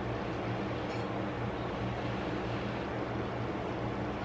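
Steady low hum with an even hiss, a room's background noise of the kind a fan or air conditioner makes, with one faint tick about a second in.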